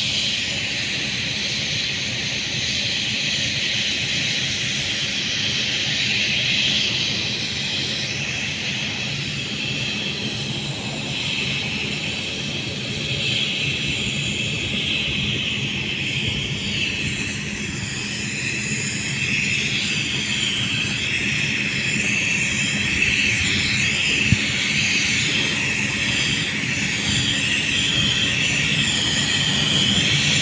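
Spray-painting rig running steadily on underground pipes: a constant hiss of the spray over a machine drone beneath it.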